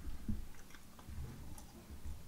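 A person chewing a mouthful of soft steamed bread bun: faint, irregular soft thuds and small wet mouth clicks.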